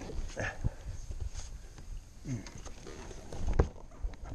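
Hollow knocks and bumps against a boat's hull and gunwale as a hooked bass is brought alongside, with one loudest thump about three and a half seconds in. A short 'mm' from a person in the middle.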